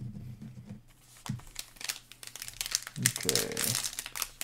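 A foil Panini Mosaic trading-card pack being torn open and crinkled by hand, the crackling getting busier from about a second and a half in. A low murmuring voice is heard near the start and again near the end.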